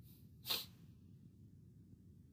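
A person sneezes once, short and sharp, about half a second in, over a faint steady low room hum.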